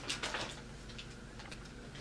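Faint handling noise with a few soft clicks as a fleece sweatshirt is unfolded and held up.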